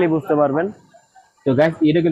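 A man speaking, with a short pause in the middle.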